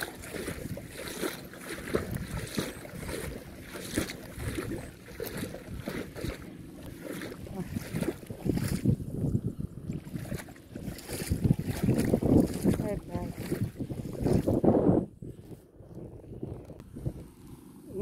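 Wind buffeting the phone's microphone outdoors, with irregular knocks and rustling from the phone being carried. Louder from about eleven to fifteen seconds in, then quieter.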